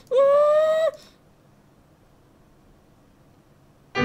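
A man's high-pitched hum, held for about a second and rising slightly in pitch, followed by about three seconds of faint room noise.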